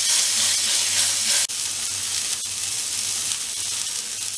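Beef tenderloin steak searing in hot oil in a frying pan, freshly turned onto its second side: a steady sizzle over a low hum, cutting out for an instant about a second and a half in.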